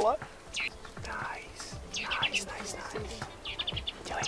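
Madeiran chaffinches chirping: short high chirps throughout, with quick runs of four or five notes about two seconds in and again near the end.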